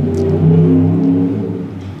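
Low engine drone of a motor vehicle, several low tones shifting slightly in pitch, loudest about half a second in and fading toward the end.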